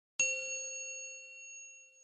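A single bright bell-like ding, struck once at the start and ringing out, fading away over about two seconds: a chime sound effect for an animated logo.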